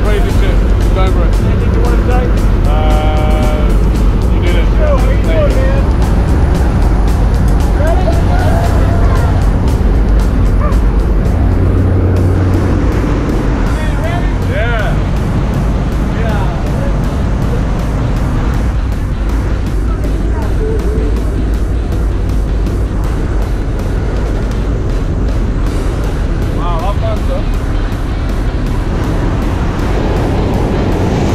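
Steady loud drone of a skydiving jump plane's engines heard inside the cabin during the climb, with a deep rumble underneath.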